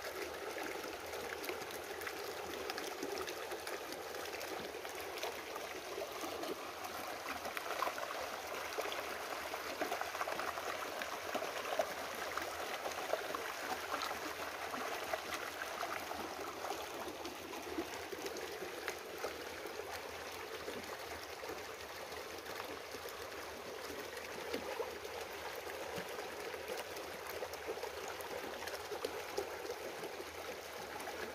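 Small rocky creek babbling and trickling steadily, with a few faint clicks.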